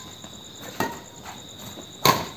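Badminton rackets hitting a shuttlecock in a fast net exchange: one sharp smack a little under a second in, with fainter taps around it. Under the hits runs a steady, high-pitched chirring of crickets.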